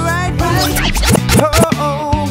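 RnB/soul band music: a sung vocal line over bass and drums, with a quick run of sliding, scratch-like sounds and drum hits from about half a second in.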